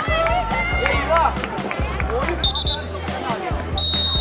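A referee's whistle blown in two blasts about a second apart, the second longer, signalling the restart of play, over girls' voices calling out and background music.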